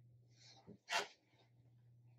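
A person sneezing once, briefly, about a second in, after a quick breath in.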